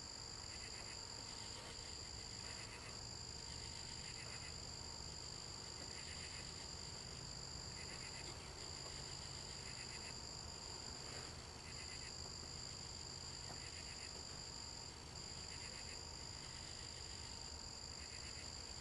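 Faint nighttime chorus of insects and frogs: a steady high-pitched drone with short pulsed calls repeating every second or so.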